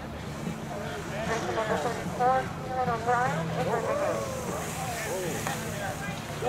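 Voices of onlookers calling out and talking indistinctly, over a steady low hum.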